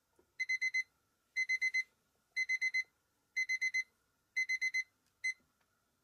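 Dachshund-shaped digital kitchen timer beeping as its countdown runs out: five groups of four quick, high beeps, one group a second, then a single beep before it stops. The alarm marks the end of the two-minute steeping time for the instant noodles.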